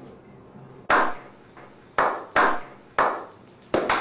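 Slow applause from a small group: single hand claps about a second apart, each with a short echo, coming quicker near the end.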